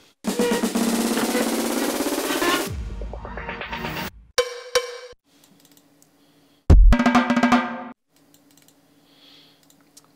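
Playback of an EDM build-up: a snare drum roll that speeds up, ending about two and a half seconds in on a deep, low boom. A short hit follows, then about seven seconds in a second heavy impact with deep bass, cut off about a second later.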